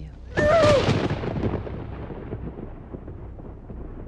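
A trailer impact boom: a sudden loud hit with a brief shrill, bending tone on its attack, then a long rumbling decay that fades over about three seconds.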